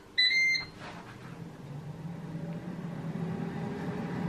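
Dual-drawer air fryer beeping once as its start button is pressed, then its fan starting up and running with a steady hum that grows gradually louder as it begins cooking.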